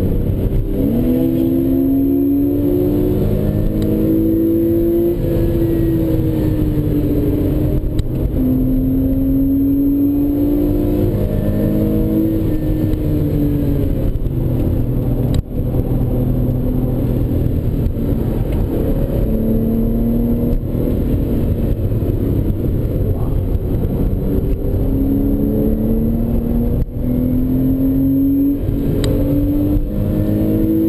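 Porsche 911 Carrera S flat-six engine heard from inside the cabin under hard track driving. Its pitch climbs again and again under acceleration and falls back between pulls, over steady road and tyre rumble.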